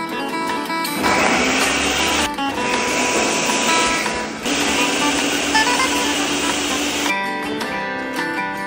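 Countertop blender running as it purées chopped red vegetables, starting about a second in and stopping about a second before the end; its motor pitch rises as it gets up to speed, with a brief break about two seconds in. Acoustic guitar background music plays throughout.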